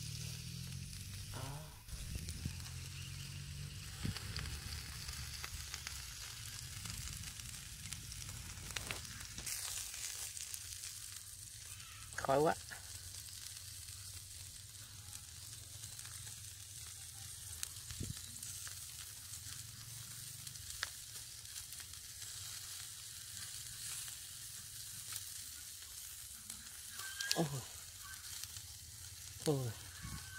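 Shrimp and squid skewers sizzling steadily on a wire grill rack over hot charcoal. A short louder sound comes about twelve seconds in and again twice near the end.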